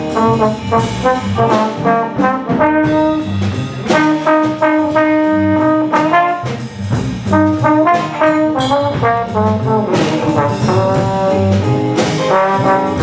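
Small jazz combo playing live, with a trombone carrying the lead line in sustained, held notes over a moving bass line and drums with cymbals.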